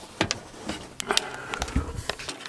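Handling noise: a few sharp clicks and knocks and one low thump as hands and the camera move around inside a wooden cabinet.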